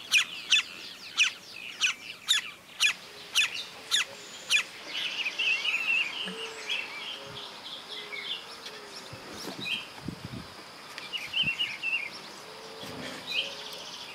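Wild birds calling in the open. A run of short, sharp calls comes over the first four or five seconds, then scattered high chirps and a low note repeated several times.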